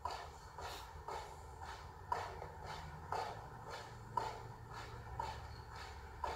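Feet striking the floor in a wall marching drill: faint, even foot strikes about twice a second, every other one a little stronger.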